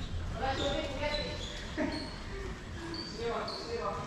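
Players' voices calling out across a basketball court, with a basketball bouncing on the court surface.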